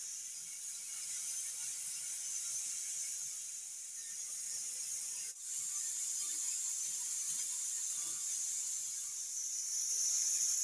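A steady high-pitched hiss, with a brief break about five seconds in, over faint soft handling sounds.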